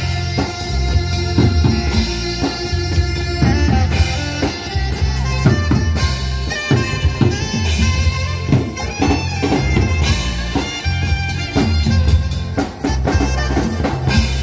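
Live band playing a dance number: a drum kit keeps a steady beat under a bass line, with a trumpet playing the melody.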